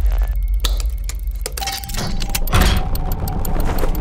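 Trailer sound design: a deep low drone left by a bass boom, laced with rapid mechanical clicking, and a second deep boom about two and a half seconds in.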